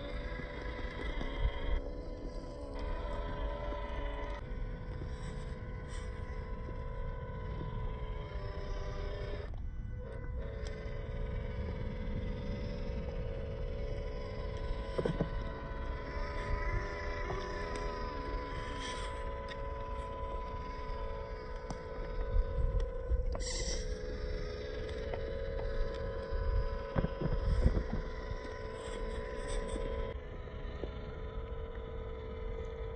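WPL C24 1/16-scale RC crawler's small brushed electric motor and gearbox whining as the truck crawls over sand and rock, a steady high hum whose pitch wavers slightly with throttle. A low rumbling noise sits underneath.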